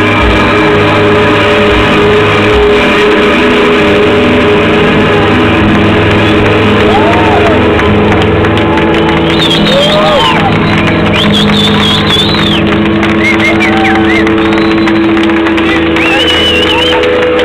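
Live band holding a long sustained chord, loud throughout, with a few drum hits in the first couple of seconds. From about halfway through, the audience cheers and whistles over it.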